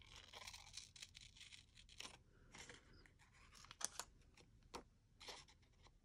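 Small scissors snipping paper in a string of faint, short, irregular cuts with some paper rustling, trimming the white border from a paper cut-out.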